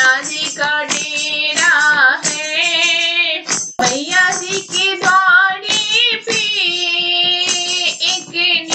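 Hindi devotional bhajan music: a high, wavering vocal line over a steady percussion beat, with a brief break just before the middle.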